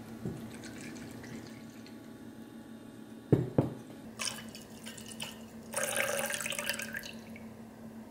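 Gin poured into a glass measuring cup and then trickled from the cup into a copper cocktail shaker tin, the liquid splashing in two spells in the second half. Two sharp knocks a little over three seconds in are the loudest sounds.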